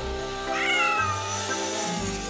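A cartoon cat's vocal call, rising briefly and then sliding down in pitch, about half a second in, over background music.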